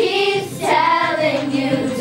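A group of children singing together in unison, holding long notes.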